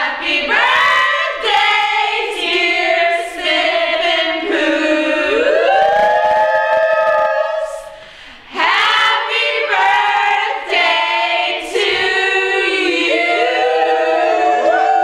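A group of women singing a cappella in close harmony, several voices together with no instruments, with a short break a little past halfway before they come back in.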